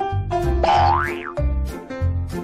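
Upbeat background music with a steady bouncy beat. About half a second in, a cartoon-style sound effect glides quickly upward in pitch, then drops off.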